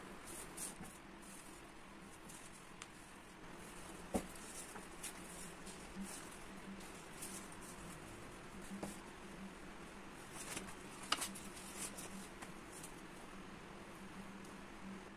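Faint rustling and handling of paper sheets on a desk, with scattered light taps and two sharper clicks, one about four seconds in and one about eleven seconds in, over a faint steady room hum.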